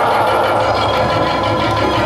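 Loud amplified live folk music: a sustained harmonium chord over a pulsing low drumbeat.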